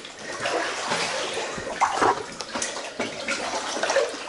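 Feet wading through shallow water, the water sloshing and splashing with each step, with a few sharper splashes about two seconds in.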